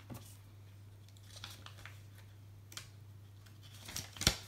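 Faint rustling and a few light taps from small plastic toy pieces and paper sticker sheets being handled on a table, over a low steady hum.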